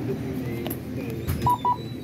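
Two short, high electronic key beeps from a checkout keypad being pressed, near the end, over a low murmur of voices.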